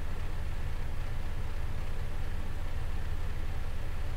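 Steady low hum with a faint hiss over it: the background noise of the voice recording, heard in a pause of the speech.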